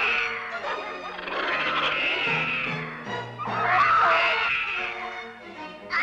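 Cartoon bear roaring in three long swells, the loudest about four seconds in, over background music.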